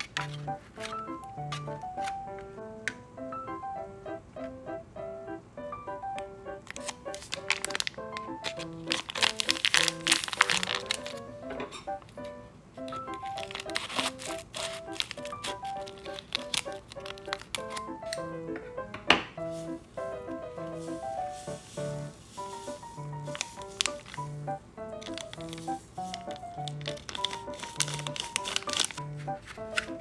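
Gentle background music with a repeating melody, over crinkling and tearing of a silver foil powder sachet from a Kracie Popin' Cookin' candy kit being handled and opened. The crinkling comes in bursts, loudest about eight to eleven seconds in and again near the end, with one sharp click a little past the middle.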